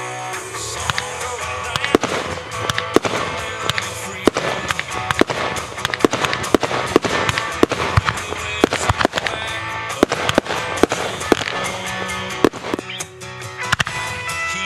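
Aerial fireworks going off: a rapid, irregular series of sharp bangs and cracks, several a second, over music.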